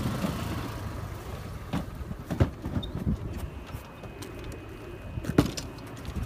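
A steady low rumble with a few sharp knocks, the loudest about five seconds in, as a golf cart stuck in mud is handled.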